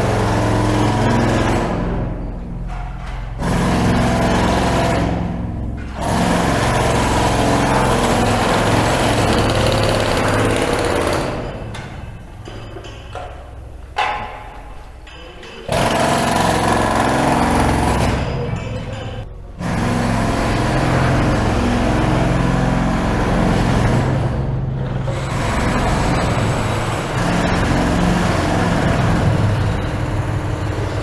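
Pneumatic jackhammers breaking concrete, hammering loud and steady and stopping abruptly several times, with the longest pause about twelve to fifteen seconds in.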